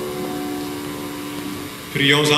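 The last chord of keyboard music held and slowly fading away.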